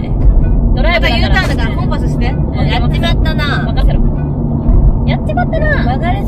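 Steady low drone of a Subaru BRZ's flat-four engine and tyre noise heard from inside the cabin while driving, under women talking.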